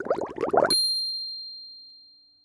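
Laughter that cuts off abruptly less than a second in, followed by a single high, bright chime that rings out and fades: the sound effect for the channel's end card.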